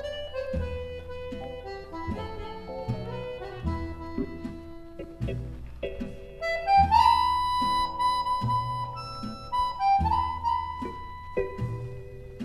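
Instrumental dance music led by an accordion, with a bass accompaniment keeping a steady beat. A little over halfway through, the melody climbs into louder, long-held high notes.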